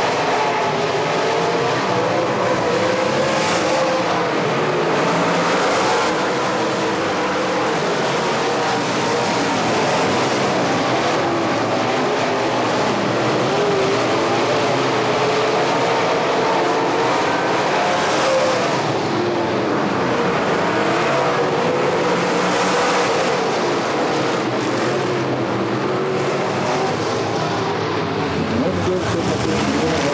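A field of dirt late model race cars running laps on a dirt oval: many V8 engines at once, their pitch rising and falling in waves as cars come by and go away, with no pause in the noise.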